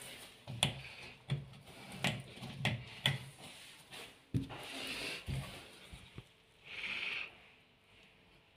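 Handling noise on a washing machine's panel: a series of light knocks and clicks, a sharper knock about four seconds in, and brief rubbing hisses in the second half.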